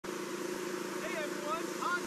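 Steady hiss and hum of a homemade snow gun running, spraying compressed air and pressurized water, with machinery behind it. A warbling, voice-like sound rises over it in the second half.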